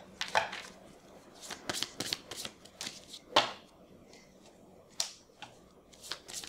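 Divination cards being shuffled and handled on a table: a string of irregular light snaps and taps, the loudest a little past the middle.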